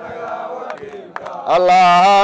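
Group of men chanting. About one and a half seconds in, a single loud voice comes in over them, holding long sung notes.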